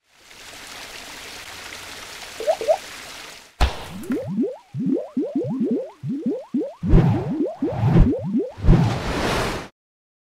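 Outro sound effects: a steady whooshing hiss for about three and a half seconds, then a sudden hit and a rapid run of short rising, bubbly pitch sweeps, with deep thumps near the end before it cuts off.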